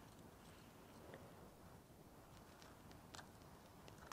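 Near silence broken by a few faint clicks and crunches as a blue crab's legs are pulled off with pliers.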